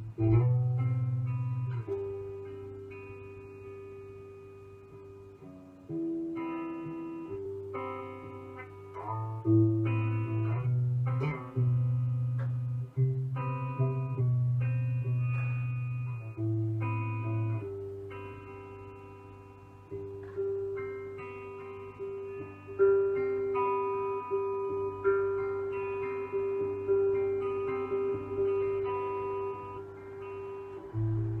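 A recorded electric guitar improvisation played back: single notes and chords struck one at a time and left to ring and fade, in slow, free timing.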